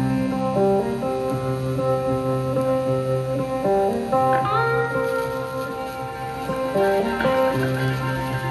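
Two cigar box guitars played together in an instrumental blues intro: held, ringing notes changing in steps, with one note rising in pitch about four seconds in.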